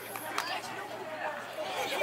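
Indistinct chatter of several people talking at a distance, with no single clear voice.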